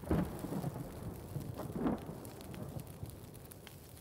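Rumbling, crackling noise like a thunder or fire-burst effect, swelling sharply just after the start and again about two seconds later, then dying down.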